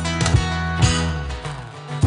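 Live rock band playing an instrumental passage: acoustic guitar strumming over electric bass, with a few sharp drum hits in the first second. The band thins out into a brief lull about a second and a half in, then comes back in at the end.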